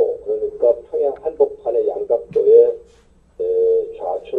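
Only speech: a man speaking Korean into a microphone, delivering a sermon.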